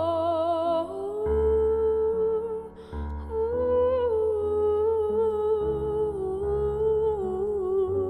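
Female voice singing a wordless melody with vibrato over sustained digital piano chords that change every second or two.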